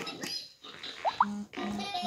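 Electronic toy farm barn's speaker playing sound effects after its light-up number button is pressed: a click, then two quick rising whistle-like glides, then three short repeated tones.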